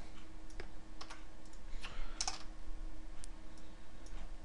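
Typing on a computer keyboard: a series of scattered, irregular keystrokes.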